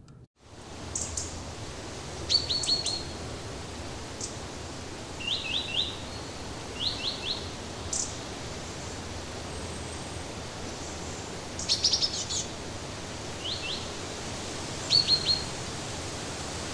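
Birds chirping in quick runs of two to four short high notes, repeated every second or two, over a steady background hiss.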